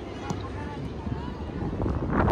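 Faint, distant shouts and calls of players and spectators across a soccer field, over a steady low rumble of wind on the microphone.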